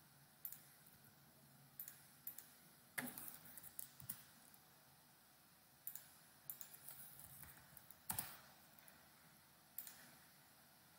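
Faint, scattered clicks of a computer mouse and keyboard, now single and now a few in quick succession, with short gaps between.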